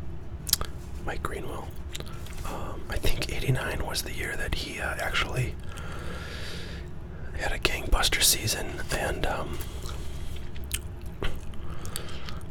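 Gum chewing close to the microphone, with soft whispering in two short stretches and the light rustle and click of cardboard trading cards being shuffled.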